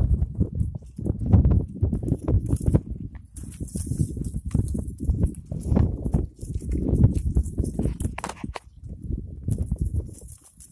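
Irregular scuffs and knocks of footsteps and goat hooves on rocky ground, over a low, uneven rumble on the microphone.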